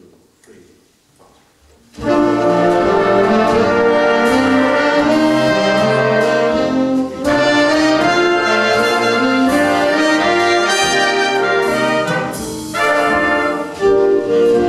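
A jazz big band comes in together about two seconds in, its trumpets, trombones and saxophones playing loud full chords over the rhythm section, with two brief breaks in the phrase later on.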